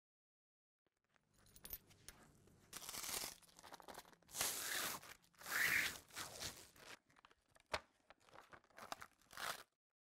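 Plastic vacuum bagging film being peeled and crinkled off a cured carbon fibre infusion panel: a few short, faint tearing rustles, then a single sharp click.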